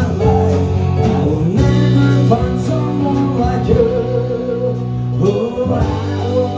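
Live rock band playing: electric and acoustic guitars, bass, keyboard and drums, with a steady cymbal beat about twice a second.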